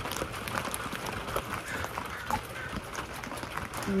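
Irregular light taps and crinkles of plastic being handled and pressed into a clear plastic storage bin, over a steady hiss of rain.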